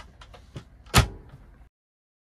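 Hinged wooden cabinet door on a drawer-converted RV kitchen cabinet being swung shut: a few light clicks and knocks, then one loud bang as it closes about a second in. The sound cuts off suddenly shortly after.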